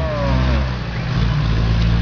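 Vehicle engine running at idle with a steady low hum, while the vehicle waits for cattle blocking the road. A drawn-out tone slides down and fades in the first second.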